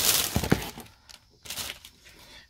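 Clear plastic cover-on-cover sleeve crinkling and crackling as it is handled, with a couple of sharp snaps about half a second in.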